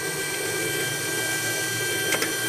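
Stallion pellet extruder's NEMA 34 stepper motor turning the screw at 45 RPM, a steady whine with several high, constant tones over a mechanical hum. It is pressing molten PLA against a bolt held on a scale, building force under load.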